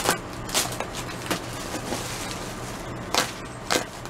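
Clear plastic bags and air-cushion packing crinkling and crackling as they are handled, with about five sharp crackles spread over four seconds.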